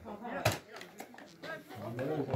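Men's voices calling out across a football pitch, with one sharp smack about half a second in.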